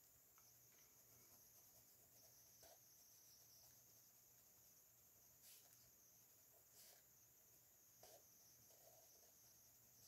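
Near silence: faint colored pencil strokes on paper, with a few soft ticks, over a low steady hum.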